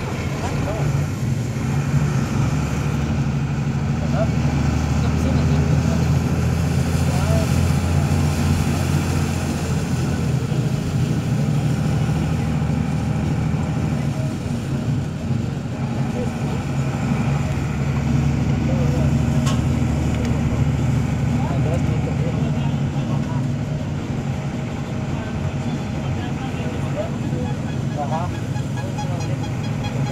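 A vehicle engine running steadily while driving, getting louder twice as it takes on more load.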